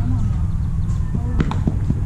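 Outdoor ambience at a baseball field: a steady low rumble, with a few short, sharp clicks about halfway through and shortly after, in a lull between spectators' shouts.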